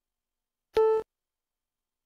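Classic Mac OS system alert beep: one short, steady electronic tone lasting about a quarter of a second, with a clear pitch and overtones. It is the feedback the system plays when the volume is set with the Control Strip's volume slider.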